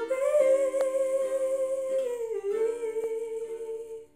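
A woman humming a slow, held melody that steps down in pitch about halfway, over softly plucked ukulele chords.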